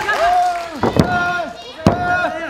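Hand slaps on a wrestling ring's canvas mat during a pin count: two sharp slaps about a second apart, with voices shouting between them.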